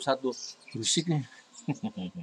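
A man's voice finishing a short word, then a brief breathy chuckle in a few short, quick bursts near the end.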